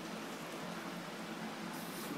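Steady, faint background hiss of room noise with no distinct sounds.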